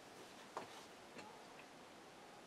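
Near silence with two faint, short clicks, one about half a second in and a weaker one just over a second in.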